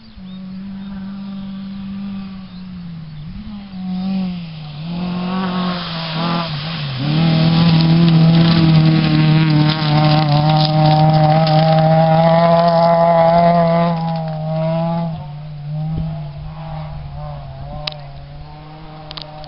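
A rally hatchback's engine at full throttle on a gravel stage, approaching from afar. The engine note drops and picks up again a few times as the driver lifts and changes gear, is loudest as the car passes close, then fades as it drives away.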